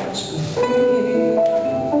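Live music: Portuguese guitar and keyboard playing together. After a brief dip near the start, new sustained chords come in about half a second in.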